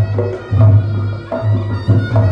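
Reog Ponorogo gamelan music: heavy, irregularly spaced drum beats under a pitched melody that moves in steps.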